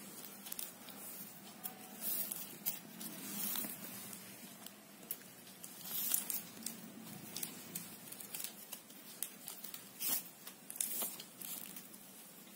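Plastic basket-making wire strands rubbing and scraping against each other as they are pulled through the woven mesh and drawn tight into a knot, in short irregular scratchy rasps, loudest about six and ten seconds in.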